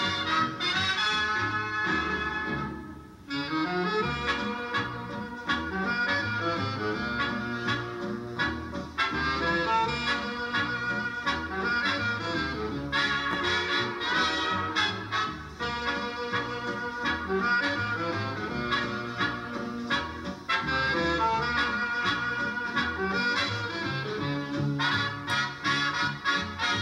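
Instrumental music with a steady beat, playing back from a television. It dips briefly about three seconds in, then carries on.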